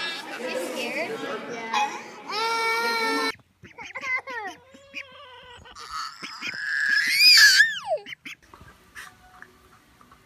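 A toddler's excited babbling and a long held squeal, then, after an abrupt cut about three seconds in, short high calls and a loud squeal that rises and then falls away in pitch about seven seconds in.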